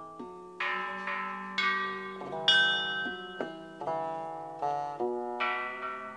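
Background instrumental music of plucked-string notes, each struck sharply and left to ring and fade, a new note or chord a little more than once a second.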